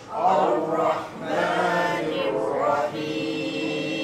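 A group of voices reciting Arabic together in a chanted, drawn-out unison, phrase by phrase, with brief breaths between phrases.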